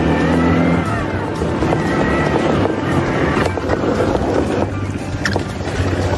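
Quad bike (ATV) engines running as the machines are ridden, with background music that is loudest over the first second.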